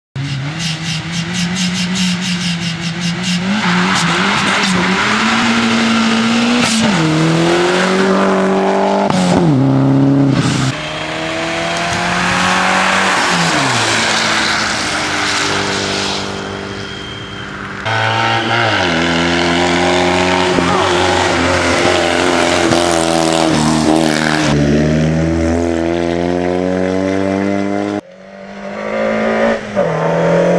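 Rally car engines revving hard as the cars accelerate past on a wet tarmac stage, pitch climbing through each gear and dropping back at every shift. Several passes of different cars are joined by abrupt cuts.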